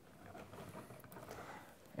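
Faint, irregular handling sounds of pliers working on 12-gauge solid copper wire, bending its end to shape for a screw terminal.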